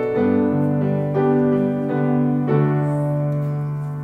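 Piano playing the closing chords of a church anthem. A last chord is struck about two and a half seconds in and left to ring and slowly fade.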